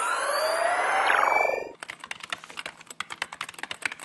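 Logo-sting sound effects. A rising whoosh with climbing tones and one falling tone cuts off about two seconds in. Rapid keyboard-typing clicks follow.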